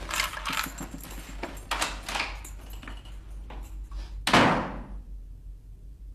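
Rustling and clattering of objects being handled in the dark, then one loud thud a little after four seconds in.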